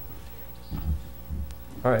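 Steady electrical mains hum from the meeting room's microphone and sound system during a pause, with a few faint low murmurs. A man's voice says "All right" near the end.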